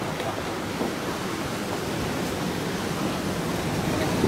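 Steady, even rushing noise of outdoor seaside wind and surf, with no distinct events.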